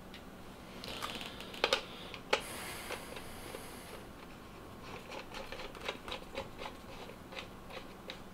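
Small clicks and taps of hands handling a vape mod and unscrewing a rebuildable tank atomizer from its threaded 510 connector, with a short rubbing hiss about two and a half seconds in.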